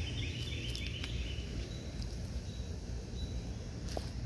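Outdoor garden ambience: a steady low rumble on the microphone, with a quick series of faint, high chirps during the first second or so.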